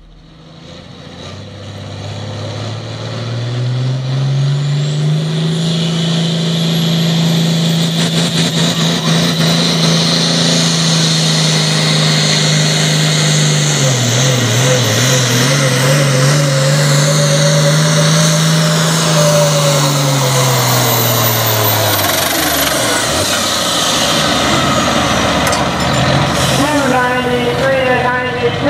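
Diesel pro stock pulling tractor running flat out under load on a pull, with a high whine that climbs over the first few seconds and then holds. The engine note wavers about halfway through and drops away a few seconds before the end as the run finishes.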